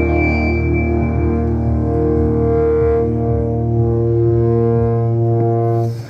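Live rock band holding a long sustained chord over a deep low drone, heard through the crowd at a concert. The chord cuts off near the end.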